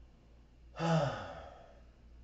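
A person sighing once, a little under a second in: a short voiced sound falling in pitch that trails off into an out-breath.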